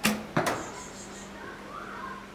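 Longbow shot: the string slaps forward on release with a sharp snap and a short low hum, and about a third of a second later a second sharp knock as the arrow strikes the target.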